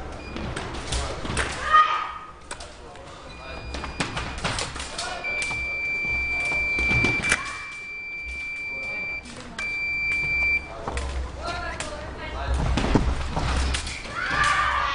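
Electronic signal tone from a fencing scoring machine: one steady high beep lasting about four seconds, a brief gap, then a second, shorter beep. Scattered knocks and thumps and hall chatter come through around it.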